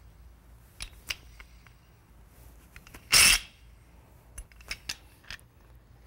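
Metal valve parts being handled and fitted together: a few light clicks and ticks, with one louder short scrape about three seconds in.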